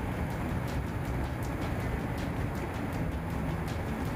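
A beet destoner-washer running with a steady low rumble, and irregular knocks a few times a second as beet tumbles through the machine and its elevator.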